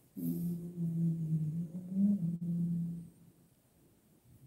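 A man humming one long, low closed-mouth 'hmm' for about three seconds. The pitch wavers and rises briefly about two seconds in, then it stops.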